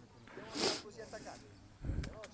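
Faint distant voices calling out across an open football pitch, with a short breathy hiss close to the microphone about half a second in and a low thump near the end.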